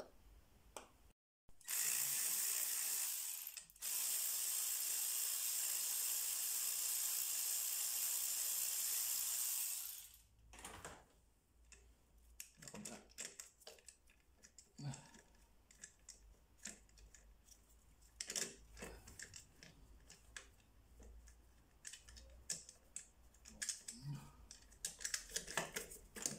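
Ratchet wrench with an 8 mm socket clicking rapidly as the fuel-filter bolts are spun out, in two long steady runs. After that, scattered faint clicks and knocks of hands handling the loosened fuel filter.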